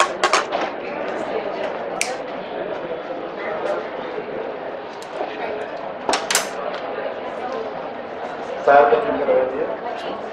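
Low chatter of people in a hall, broken by a few sharp clicks: one at the start, one about two seconds in, and two close together around six seconds in. A voice speaks briefly near the end.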